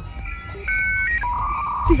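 A short electronic tune of steady beeping tones that step between a few pitches and end on a lower held tone.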